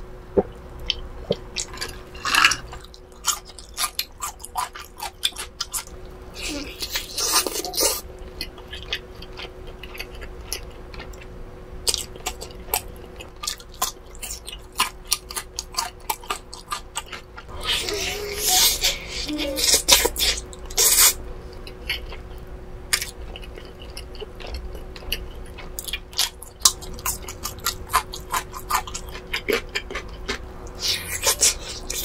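Close-miked chewing of grilled barbecue chicken: many short, wet mouth clicks and smacks, with a few louder spells of chewing noise.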